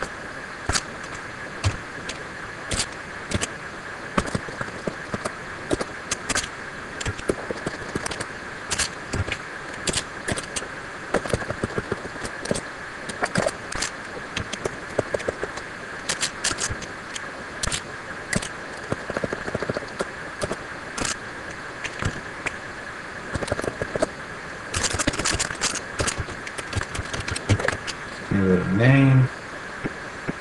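Computer keyboard typing in irregular runs of keystrokes, with a dense flurry near the end, over a faint steady high hum.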